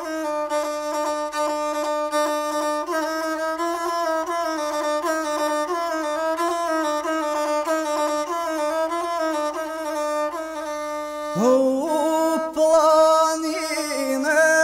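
Gusle, the single-string bowed fiddle of South Slavic epic song, playing a busy, ornamented melodic interlude between sung verses. About eleven seconds in, a male voice enters with a rising sung cry over the instrument.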